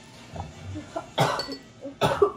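A single sharp cough about a second in, with a few small mouth and throat sounds before it: a person coughing on extra-spicy instant noodles.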